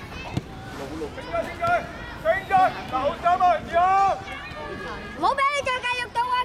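Voices shouting from the touchline of a youth soccer match: a quick run of short, high-pitched calls, then near the end one long drawn-out shout that rises sharply in pitch and is held.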